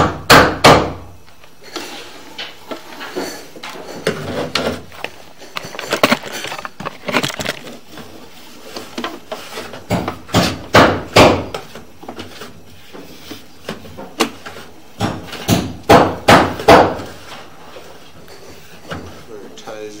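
Irregular knocks and bumps, coming in clusters of a few strokes, as a sewer inspection camera's push cable and head are fed along a drain line and strike the pipe.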